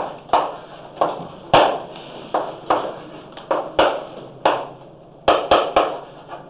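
Chalk writing on a chalkboard: about a dozen short, sharp chalk strokes and taps at an irregular pace, with a quick run of taps near the end.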